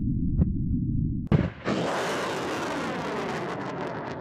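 Cartoon rocket blast-off sound effect: a low rumble, then a sudden bang just over a second in, followed by a long whoosh that slowly fades.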